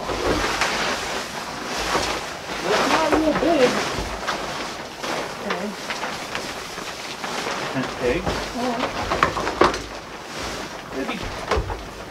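Nylon camouflage fabric of a pop-up hunting blind rustling and crinkling in irregular bursts as it is unfolded and shaken out by hand, with a little low talk in between.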